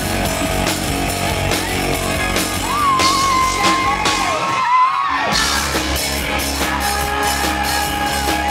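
A rock band playing live, with electric guitars, bass and drum kit. Midway a long high note is held while the drums and bass stop for about half a second, then the full band comes back in.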